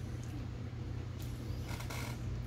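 A steady low hum, with a few faint ticks from hands working thread at a fly-tying vise.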